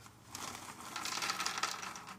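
Crinkling of a Goldfish crackers snack package being handled and turned over in the hands, starting about a third of a second in.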